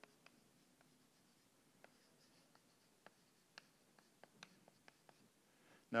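Chalk writing on a blackboard: faint, irregular taps and short scrapes as letters are written.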